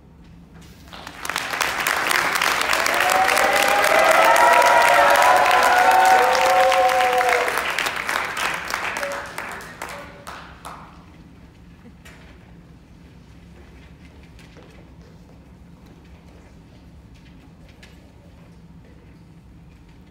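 Audience applauding in a large hall, swelling in about a second in, with high whoops and cheers over the clapping in the middle. The applause dies away around ten seconds in, leaving a quiet stretch with scattered small clicks and rustles.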